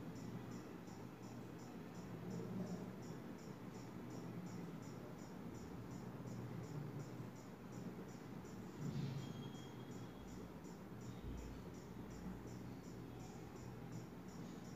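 Faint, regular high-pitched insect chirping, about three chirps a second, over a low steady hum.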